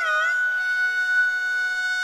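Carnatic devotional music without singing: a high melodic instrument ends an ornamented, sliding phrase early on, then holds one long steady note over a soft drone.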